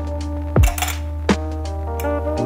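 Ice cubes clinking as they are dropped into a drinking glass, a clatter about half a second in and another clink near the middle, over background music with deep bass drum hits.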